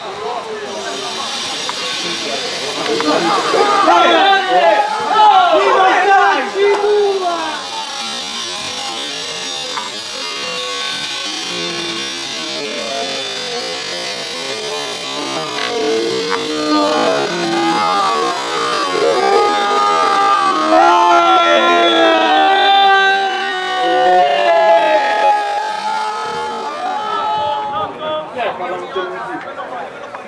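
Voices shouting and calling across a football pitch during play, with long drawn-out calls, the loudest about four seconds in and again past the middle, over a steady hiss.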